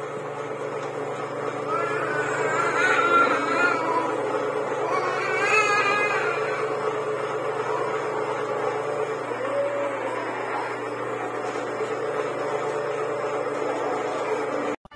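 Electric dough roller's motor humming steadily as bread dough is fed through its rollers. A wavering high sound comes over it twice in the first half.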